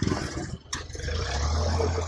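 A motor vehicle's engine running with a steady low hum, which grows louder about a second in.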